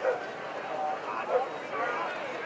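Short, distant shouted calls from players and spectators across an outdoor lacrosse field, over a steady outdoor background. The sharpest calls come just at the start and about one and a half seconds in.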